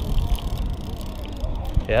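A levelwind baitcasting reel being cranked by hand, winding in line against a big flathead catfish, with small clicks over a steady low rumble of handling noise.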